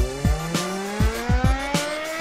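Small dirt bike engine revving up steadily, its pitch rising throughout, while the bike is held in place and the rear wheel spins and smokes. A heavy bass beat of music plays over it.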